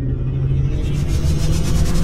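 Cinematic logo-reveal sound effect: a deep rumble under a steady low drone, with a fast-fluttering high whoosh that builds louder toward the end, rising into an impact.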